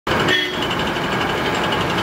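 Electric coffee grinder running steadily as it grinds roasted coffee beans, a loud machine drone with a fine, even pulsing.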